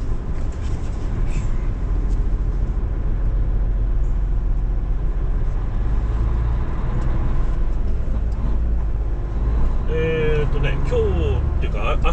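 Heavy truck's diesel engine running at low speed, a steady deep rumble heard from inside the cab as the truck rolls slowly across a parking lot. A man's voice starts up briefly near the end.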